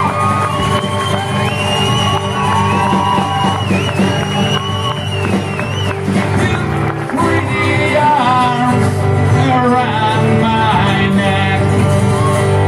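Live acoustic rock performance: strummed acoustic guitar and accompaniment with long held sung or harmonica notes, then singing mixed with shouts and whoops from the crowd in the second half.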